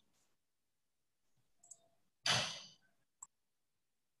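A person's breath exhaled close to the microphone, starting suddenly about two seconds in and fading over half a second, followed by a single short click.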